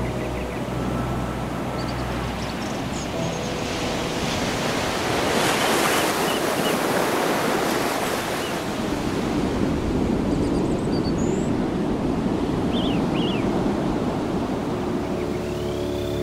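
Ocean surf: waves breaking and washing ashore as a steady rush, swelling to its loudest about six seconds in.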